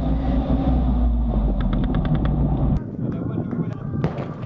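Armoured combat vehicle's engine running with a heavy low rumble, recorded on board, with a short rapid run of sharp cracks, about eight a second, around the middle. About three seconds in it drops to a quieter distant sound with a few sharp cracks near the end.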